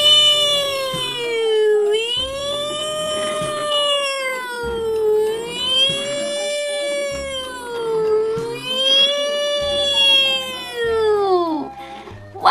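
Siren wail for the toy ambulance, gliding slowly up and down about four times, each rise and fall taking around three seconds, then cutting off just before the end.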